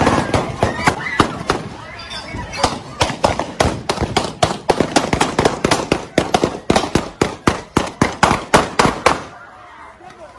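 A long run of sharp bangs, several a second and irregular, growing louder toward the end and then stopping abruptly about nine seconds in.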